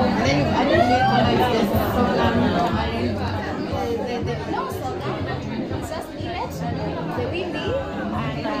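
Several people chatting over one another, with music playing in the background.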